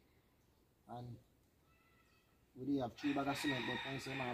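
A pause with only a brief voiced sound about a second in, then a man's voice talking loudly from about two and a half seconds in.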